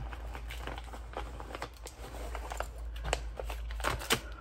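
Rustling and scattered light clicks and taps of small things being handled, with a sharper knock near the end, over a low steady hum.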